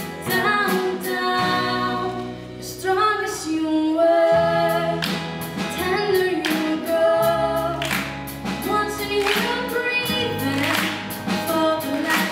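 Live band music: a young woman sings lead over acoustic guitar, electric guitar and a drum kit, with steady drum and cymbal hits.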